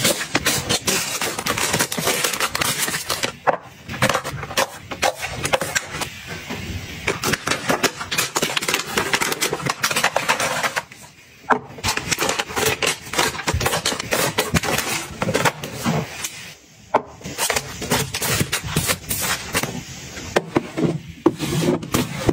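Plastic-wrapped packets and cardboard boxes crinkling, rustling and knocking lightly as they are packed into a white drawer organizer by hand, a dense run of handling sounds with two short pauses, one near the middle and one about two-thirds through.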